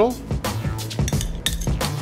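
A metal spoon clinking a few times against a ceramic serving dish as tomato jam is spooned out, over steady background music.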